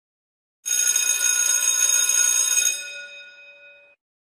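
A bell-like ringing sound effect starts about half a second in. It holds steady for about two seconds, then fades away near the end.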